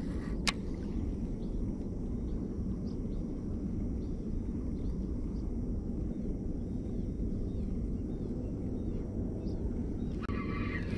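Steady low rumble throughout, with a single sharp click about half a second in and a few faint high chirps in the background.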